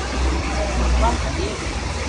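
Floodwater rushing across a street in a steady, even noise with a heavy low rumble, and faint voices underneath.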